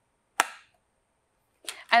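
A single sharp click about half a second in, dying away quickly: the bag-compartment clamp of a Simplicity Sport canister vacuum snapping shut after the bag is put back in.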